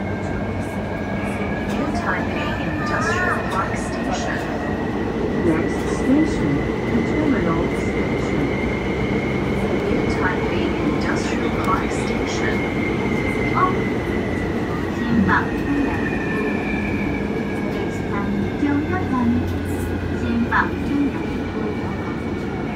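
Interior sound of a New Taipei Metro Circular Line train running: a steady rumble under an electric motor whine that rises gently in pitch for about the first half and then falls.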